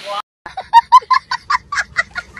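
A child laughing hard in a rapid run of short, high bursts that starts about half a second in, right after a brief silence.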